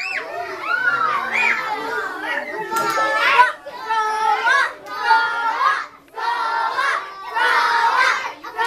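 A group of young children's voices shouting and calling out together, loud and overlapping. In the second half they come in short repeated bursts about a second apart.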